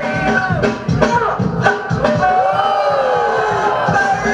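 Loud breakdance battle music over the venue's sound system: a steady beat with a melody line that slides down in pitch in the second half.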